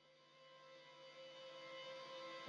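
Near silence, with soft background music of sustained notes fading in slowly from about a second in.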